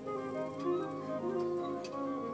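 Symphonic wind band playing a soft passage of held notes, with a few sharp ticks over it.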